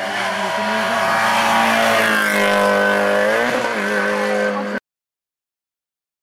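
Rally car engine approaching at speed, growing louder, then its note falling in pitch as it comes past, with one brief rise and fall near the end. The sound cuts off abruptly about five seconds in.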